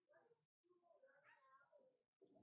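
Near silence, with a faint, distant child's voice speaking off-microphone: an audience member asking a question.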